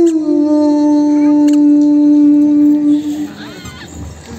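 Female Carnatic vocalist holding one long, steady final note that dies away about three seconds in.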